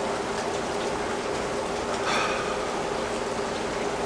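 Steady hiss of pouring rain, with a faint steady hum underneath and one short breath about halfway through.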